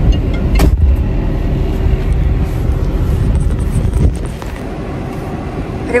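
A car's engine idling, heard from inside the cabin as a steady low rumble, with one sharp click about half a second in.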